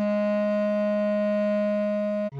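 Bass clarinet holding one long, steady melody note, fingered as written B-flat, with no change in pitch while it sounds.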